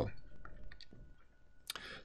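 A few faint clicks in the pause between spoken phrases, over a faint steady high tone.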